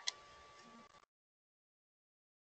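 A single faint click, followed by a faint hiss with a thin steady whine that cuts off suddenly about a second in, leaving dead silence on the call's audio.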